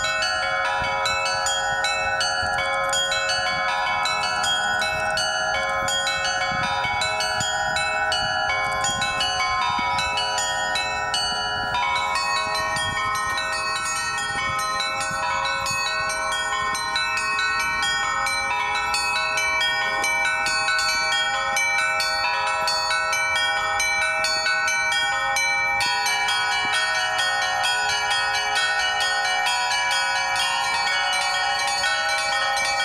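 Bells ringing in a continuous, busy peal, many bells struck in quick succession over long-ringing tones. The pattern of strikes changes about twelve seconds in and again near the end.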